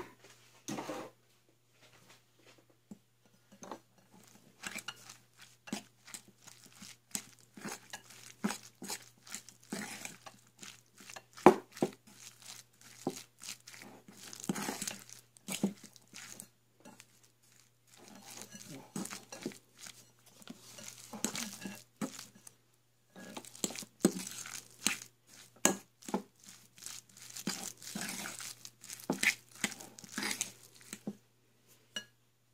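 Ground meat being mixed with sugar and seasonings in a glass bowl: irregular wet squishing and scraping strokes, with clicks of a utensil against the glass, pausing briefly about two seconds in and again around eighteen seconds.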